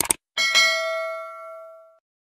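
Quick double click, then a bright bell ding that rings out for over a second before it is cut off: a subscribe-button and notification-bell sound effect.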